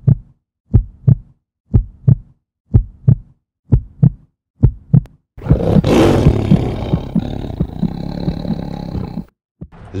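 Cinematic intro sound effects: five low double thumps like a heartbeat, about one a second, then a loud rushing roar about five seconds in as the treasure chest bursts open, lasting some four seconds and cutting off suddenly.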